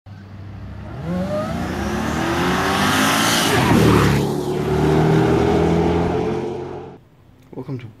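Mercedes E-Class AMG V8 accelerating hard, its engine note climbing in pitch, then passing close by with a sudden drop in pitch and carrying on at speed until the sound cuts off about seven seconds in.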